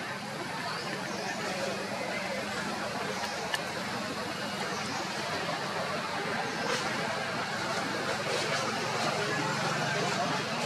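Steady outdoor background noise with indistinct, distant voices running under it and a few faint ticks; no clear animal call stands out.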